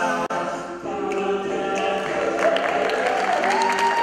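Male a cappella group singing in close harmony without instruments. The held chord breaks off sharply just after the start and the voices come back in under a second later. Near the end one high voice slides up and holds a note above the others.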